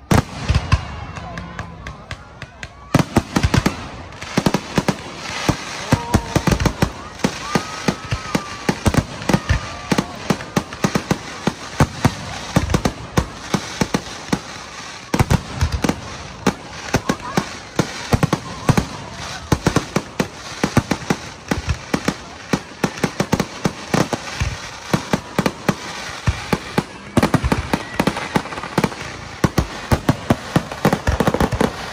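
Aerial fireworks display: a rapid barrage of shell bursts, bang after bang, several a second and getting much denser about three seconds in.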